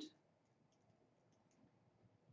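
Near silence with a few faint, short clicks of a pen writing.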